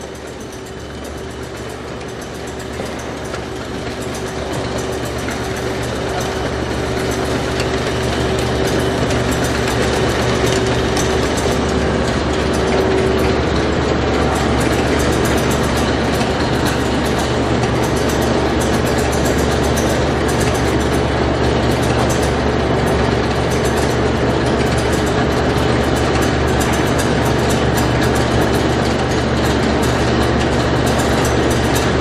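Gramac stainless steel table-top conveyor running: its ¾ hp drive motor and variable-speed gearbox hum steadily as the Delrin-style slat belt moves, growing louder over the first several seconds and then holding even.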